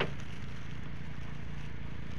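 Small engine idling steadily with a low hum, typical of a motor scooter ticking over. There is a brief click right at the start.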